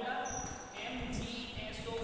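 A man talking, with dull low thumps underneath.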